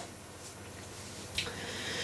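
Quiet room tone: a steady faint hiss, with one brief soft noise a little past the middle.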